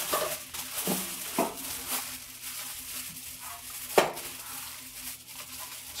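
Aluminium foil crinkling and rustling as it is folded and pressed around a masonry brick by hand, with a sharp knock about four seconds in.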